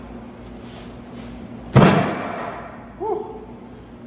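A heavy weighted vest dropped onto a hard surface: one loud thud a little under two seconds in.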